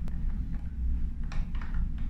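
A single sharp click at the start, then a brief faint scuff about a second and a half in: small handling noises from a hand working a metal door lock handle and its screw. A steady low hum runs underneath.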